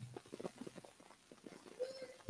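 Faint, irregular small clicks and taps over a quiet room.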